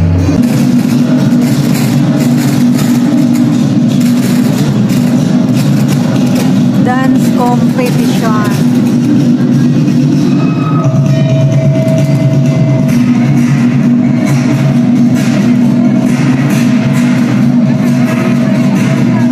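Loud music accompanying a group folk dance performance, with audience voices underneath.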